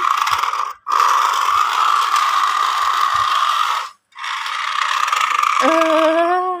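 Small toy remote-control car's electric motor and plastic gears whirring as it drives, in three runs that cut off briefly about a second in and again about four seconds in.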